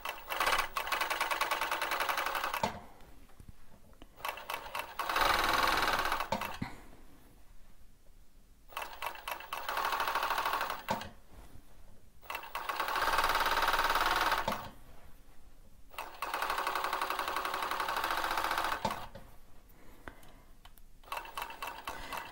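Typical industrial overlocker (serger) stitching a three-thread overlock along the edge of knit fabric. It runs in five stretches of about two to three seconds, with short pauses between them as the fabric is fed and repositioned.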